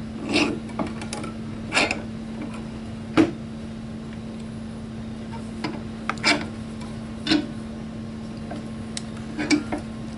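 Scattered light clicks and knocks of a shotgun magazine plate being handled and set between the padded jaws of a bench vise, over a steady low hum.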